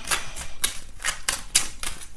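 A brand-new tarot deck being shuffled by hand: a string of quick, irregular card clicks and slaps, several a second.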